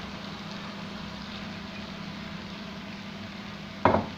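Bhaji cooking in a pan over a gas flame: a steady low hiss with a constant hum underneath. Near the end, a single sharp knock as the wooden spatula strikes the pan.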